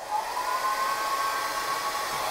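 ANIEKIN 1875W ionic hair dryer switched on, its motor whine rising in pitch over the first half second as it spins up, then running steadily with a rush of air.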